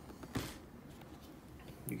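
A single short, sharp tap about half a second in, then quiet room tone.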